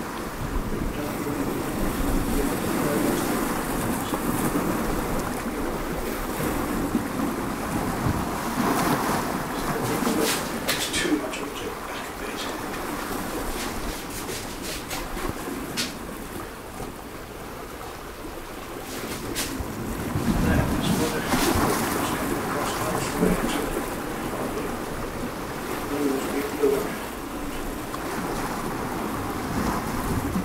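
Ocean surf and wind, a steady wash of breaking waves that rises and falls in slow surges, with a few faint clicks.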